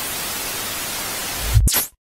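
Television static: a steady white-noise hiss, with a short louder burst near the end before it cuts off suddenly, as when an old TV is switched off.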